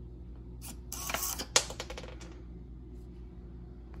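SG90 micro servos on a 3D-printed treat dispenser whirring and clicking as it releases a piece of kibble: a short run of clicks and a brief whir from about half a second in, with one sharp click near the middle, all over by about two seconds in.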